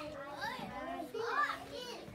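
Young children talking and chattering in a classroom, several short high-pitched utterances with no clear words.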